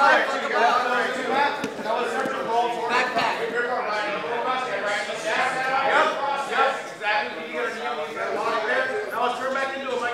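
Several voices talking and calling out over one another, with no one voice clear, from spectators and corners around a grappling match.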